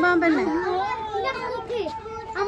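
A child talking in a high voice, continuously.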